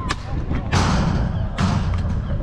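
Football being kicked in a five-a-side game: a sharp knock just after the start, then two louder, longer thuds, one about a second in and one near the end.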